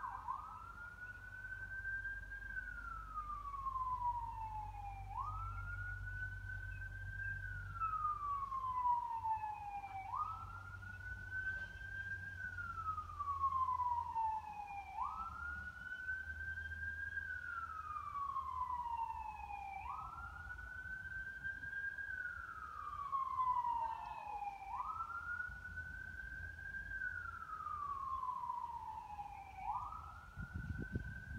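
Emergency-vehicle siren wailing: a tone that rises quickly and falls slowly, repeating about once every five seconds, over a low rumble.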